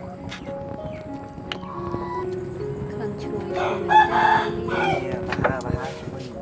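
A rooster crows once, loudly, starting about three and a half seconds in and lasting a little over a second, over quiet background music.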